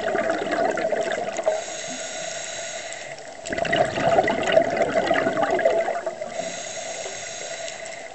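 Scuba diver breathing through a regulator underwater: bubbling exhalations, each a second or more long, alternating with quieter stretches that carry a faint high whistle, about two breaths in all.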